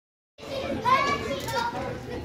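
Children's voices after a brief silence at the start, with one high-pitched child's voice calling out about a second in.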